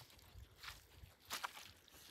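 Near silence with a few faint, soft footsteps in mud.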